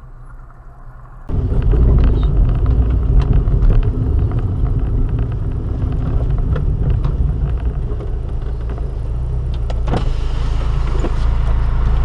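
Low, steady rumble of a car running at low speed, heard from inside its cabin through a dash camera, starting suddenly about a second in, with faint scattered clicks.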